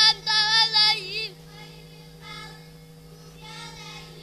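Children chanting a Quran recitation together in unison through a microphone and PA, loud for about the first second before the chorus breaks off, leaving only faint voices. A steady low electrical hum runs underneath.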